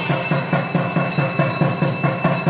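Temple percussion and bells for the puja: a fast, steady drumbeat of about six strokes a second with bells ringing continuously over it.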